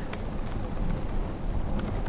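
Laptop keyboard keys clicking irregularly as someone types, over a low steady hum.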